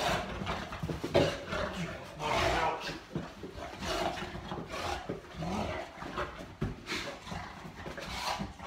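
Boerboel mastiff making breathy play noises in irregular bursts while roughhousing with a person, with fur and bodies scuffing against a leather couch.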